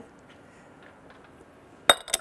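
Faint room tone, then near the end a single sharp glass clink as a small glass cup is set down.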